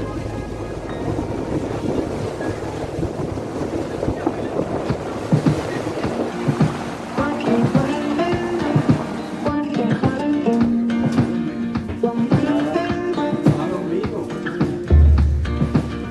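Wind and water noise from a boat moving over the open sea. About seven seconds in, background music comes in and carries on.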